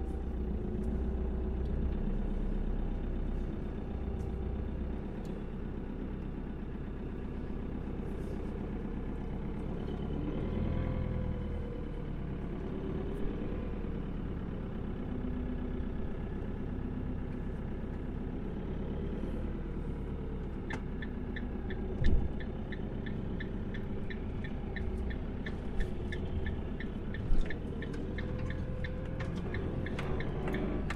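Camper van engine running steadily with a low rumble. About twenty seconds in, a steady ticking of two or three ticks a second joins it, with a couple of short thumps.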